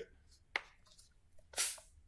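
A small click, then about a second later one short, sharp hiss from a hand-pumped LifeSaver membrane-filtration water bottle as its built-up pressure lets go and water or air jets out.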